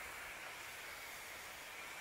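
Steady hiss of a pump-up pressure sprayer's wand nozzle misting liquid onto plants.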